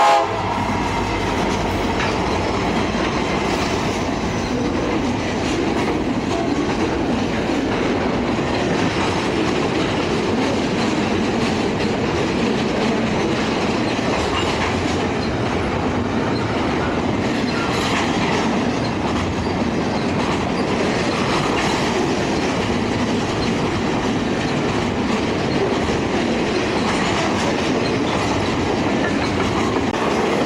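A diesel locomotive's horn cuts off right at the start, then a long CSX double-stack container freight train passes close by, its wheels rolling over the rails in a steady, loud rumble and clatter.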